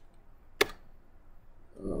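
A single computer keyboard keystroke, the Enter key starting a new line of code, a little past half a second in, over quiet room tone.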